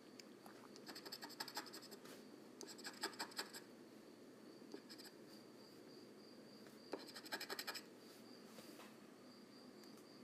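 A scratch-off lottery ticket being scratched, faintly: three short bouts of quick scraping strokes, about a second each, near the start, around the middle and about two-thirds of the way through. A faint steady high tone runs underneath.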